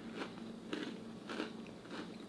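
A person chewing a bite of frozen chocolate caramel apple bark with pretzel pieces in it, faint crunches about every half second.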